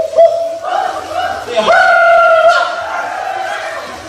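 A high voice through a handheld microphone holding long notes, sung or called out, with a short break before a second, higher held note about halfway through.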